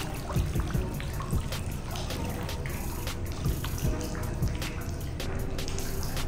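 Music playing with water trickling and splashing from a small pool waterfall underneath it.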